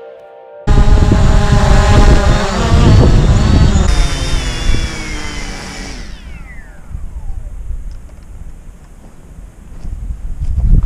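Hubsan Zino quadcopter held in the hand, its motors and propellers whining and falling steadily in pitch as they spin down after landing, with wind rumbling on the microphone. The whine starts abruptly about a second in and has faded out by about three-quarters of the way through.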